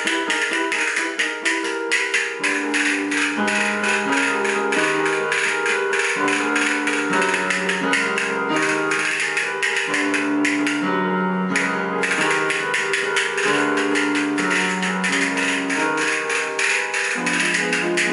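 Hand-held castanets clicking in fast, dense rolls over chords on an electronic keyboard, in an improvised duet. The castanets stop for about a second roughly two-thirds of the way through, leaving the keyboard alone, then start again.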